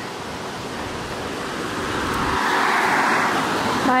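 A car passing on the road: tyre and road noise swelling steadily, loudest about three seconds in, then starting to fade.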